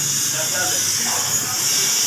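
A steady high hiss of background noise, with faint voices in the background and no chopping.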